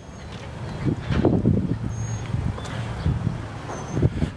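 Wind buffeting the microphone, an uneven low rumble with handling noise from the moving phone. Two brief high chirps sound faintly, one in the middle and one near the end.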